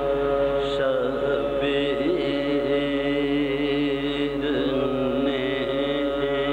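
A voice chanting soz, Urdu elegiac verse, in a slow bending melodic line over a steady held drone.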